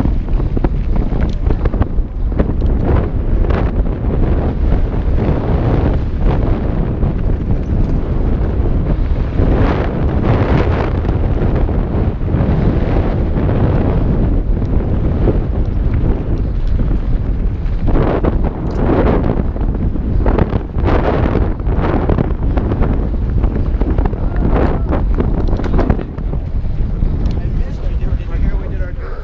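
Wind buffeting the microphone of a helmet-mounted action camera on a mountain bike descending a dirt trail at speed. It makes a loud, continuous roar, with the bike's tyres and frame rumbling and rattling over the ground in irregular knocks.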